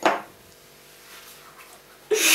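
One brief knock right at the start, then a quiet room with faint small handling sounds of cucumber slices being laid on the open sandwiches.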